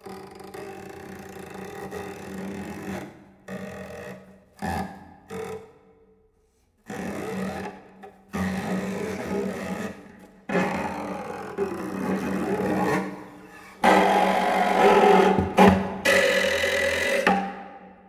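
Solo cello played with extended techniques: noisy, scraping strokes over a steady low pitch, in phrases from half a second to a few seconds long that break off suddenly between short silences. The last phrases are the loudest.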